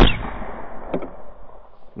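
A single .260 Remington rifle shot firing a 95-grain V-Max: one sharp, loud report, then a long tail that dies away over about a second and a half. A faint short tick comes about a second in.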